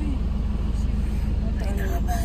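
Steady low rumble of a passenger van heard from inside its cabin, with voices talking quietly near the end.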